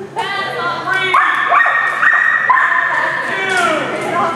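A dog barking and yipping in high-pitched, drawn-out calls, with people's voices underneath.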